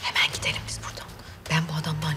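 A woman speaking in conversation.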